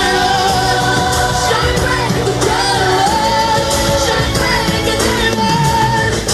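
Live pop concert music recorded from within the crowd: a female lead vocal singing long, drawn-out notes over the band's backing and a low held bass note, loud throughout.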